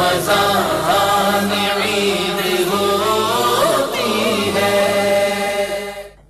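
Devotional chanting by a male voice in an Islamic setting: a slow melodic recitation with long held notes that slide from one pitch to the next, ending abruptly.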